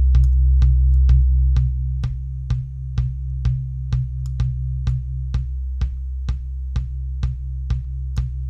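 Soloed electronic kick drum loop playing a steady beat of about two kicks a second. Heavy EQ boosts at its fundamental, tuned near 64 Hz (C), and at the octave, 128 Hz, make the kick ring as a continuous low hum under the hits. About two seconds in the low ringing drops back and the sound gets quieter.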